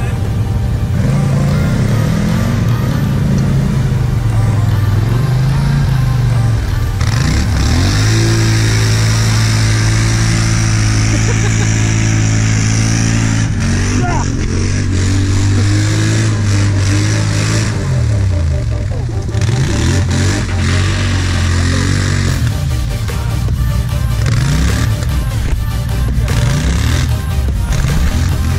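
Quad (ATV) engine revving hard as it churns through a deep mud hole: held at high revs for several seconds, then rising and falling again and again as the rider works the throttle.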